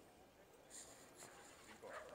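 Near silence: faint outdoor background with a few brief, faint distant sounds, among them a short high sound about three-quarters of a second in and a faint cry near the end.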